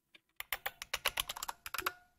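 Computer keyboard being typed on: a quick run of key clicks, starting about half a second in, as a short command is entered.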